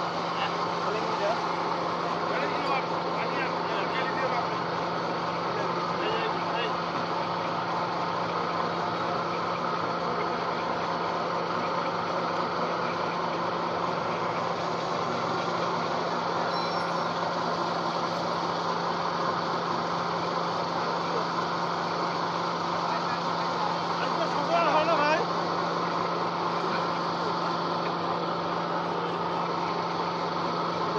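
Small electric feed pellet mill running steadily under load while extruding feed pellets: a continuous machine drone with a strong low hum.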